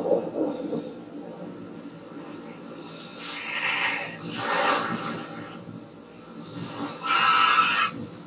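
A creature's harsh, rasping shrieks from the episode's soundtrack: a captured wight screeching as men pin it down in the snow. There are three rough screeches, the last and loudest near the end.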